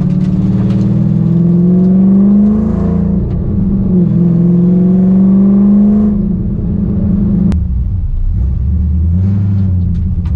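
V8 of an FPV GT heard from inside the cabin under acceleration: the engine note rises, drops as it changes up about three seconds in, rises again, then eases off just after six seconds to a lower, steadier cruise. A single sharp click about seven and a half seconds in.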